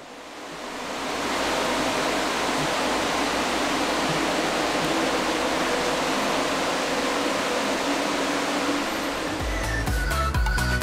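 Cooling fans of a 16-GPU crypto-mining rig running together: a steady rushing whoosh with a faint hum, fading in over the first second or so. Electronic music starts near the end.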